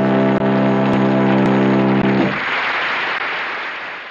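The song's final note held on tuba with the band, one steady sustained chord that cuts off a little after two seconds in. Studio audience applause follows and fades away.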